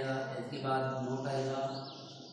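A man's voice chanting a long, steady, level tone, with a short break about half a second in and fading near the end.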